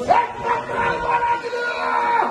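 A man's long drawn-out call, rising at once and then held on one high pitch for about two seconds before dropping away: an auctioneer's sustained bidding cry over the crowd's chatter.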